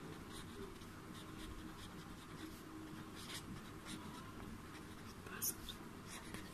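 Quiet room noise with faint, short scratchy rustles, a little louder about five and a half seconds in.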